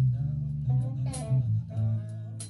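Live band playing, led by a bass guitar line of short notes that change pitch about every half second, with guitar above it.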